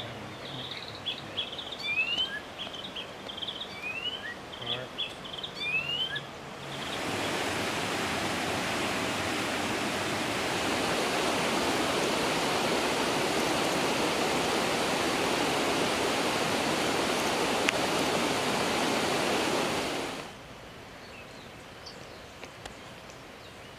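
Several forest birds calling with short, quick rising chirps and whistled notes for about six seconds. Then a steady, loud rushing hiss like running water sets in, much louder than the birds, and cuts off suddenly about two seconds before the end.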